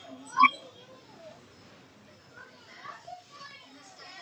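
Faint background voices of children, with a short call near the start and scattered bits of chatter later on.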